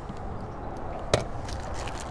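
Clear zip-top plastic bag of cut bait being handled, with one sharp click about a second in, over the steady rush of spillway water.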